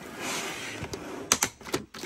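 Clear plastic wrap rustling as a hard plastic storage container is slid across the table, then a quick run of sharp plastic clicks and knocks as the containers are set in place.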